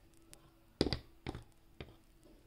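Hard plastic Schleich horse figure's hooves tapping on a tabletop as it is walked by hand: four or five light taps, the loudest a close pair a little under a second in.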